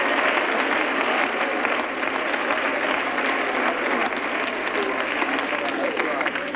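Congregation applauding: many hands clapping at once in a dense, even patter that eases slightly toward the end.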